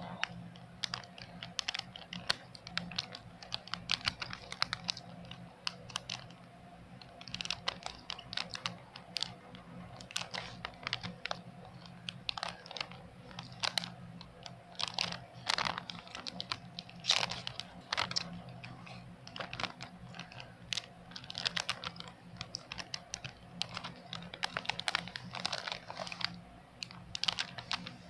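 Handling noise close to the microphone: irregular light clicks and taps, some in quick clusters, over a steady low hum.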